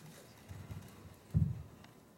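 Two dull thumps, a soft one about half a second in and a louder one near a second and a half: a handheld microphone being set down on a table.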